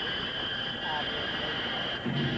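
A steady rushing noise with a constant high hum, and a short voice-like sliding tone about a second in.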